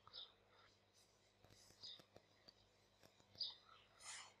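Near silence: room tone with a low hum and a few faint, short sounds.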